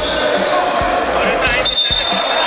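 A funky electronic dance track with a steady beat, about two beats a second, over the sound of a basketball game in a gym hall.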